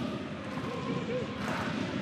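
Stadium crowd noise from spectators at a football match: a steady background wash with no single distinct event.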